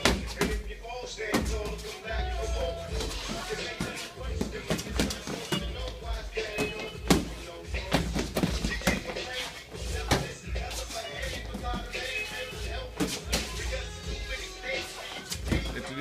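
Background music playing, with irregular sharp smacks of boxing gloves landing during sparring.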